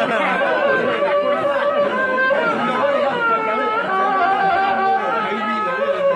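Chatter: several people talking at once, their voices overlapping.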